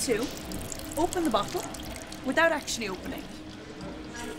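Red wine poured in a thin stream into a wine glass through a needle-type wine preservation device, whose needle is pushed through the cork and capsule and which fills the bottle with argon as wine is drawn. Short bits of voice are heard twice over the pour.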